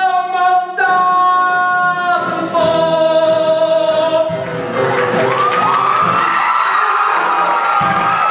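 Male singer belting the final phrases of a musical-theatre showtune, ending on a long held high note with vibrato from about five seconds in; audience cheering begins to rise under the last note.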